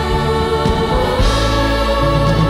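A choir singing held chords over a live band with strings and organ.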